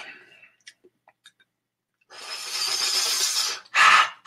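A man breathing out hard through his open mouth against the burn of a very hot sauce: a long hissing breath after a near-silent start, then two sharp huffs near the end.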